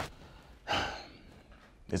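A man's single breathy sigh, a short exhale about a second in, with the start of a spoken word just at the end.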